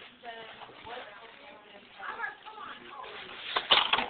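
Soft background voices talking, with a few sharp knocks near the end.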